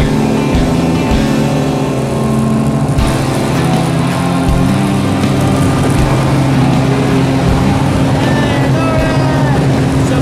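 A small high-wing jump plane's engine drones steadily, heard from inside the cabin during the climb to altitude. Voices come in over it near the end.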